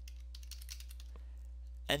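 Computer keyboard keys clicking in quick, light succession as a word is typed, over a steady low hum.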